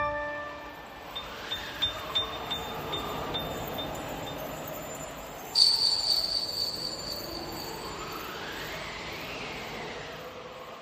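Instrumental music beginning: a struck pitched note ringing out, then a run of small high chime tinkles. About five and a half seconds in a bright bell-like chime rings and slowly fades, over a soft swelling texture that rises and falls in pitch.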